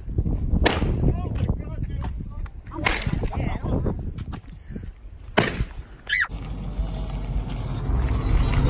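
Firecrackers going off: three sharp bangs, each two to three seconds apart, over a steady low rumble.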